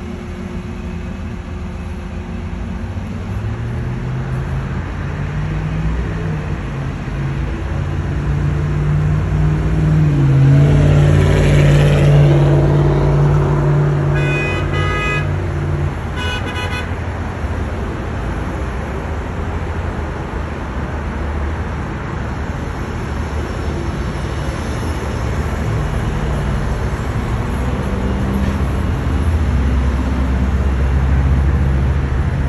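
City street traffic heard from above: vehicle engines and tyres passing, swelling to a loud pass around the middle. A car horn sounds twice, briefly, just after the loudest pass.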